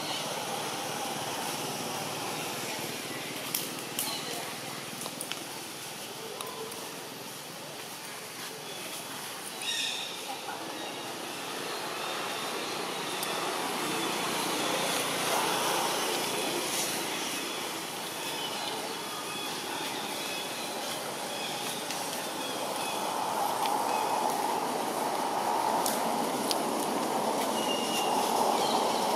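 Steady outdoor background noise with indistinct voices in it, a few brief clicks, and a rise in level over the last few seconds.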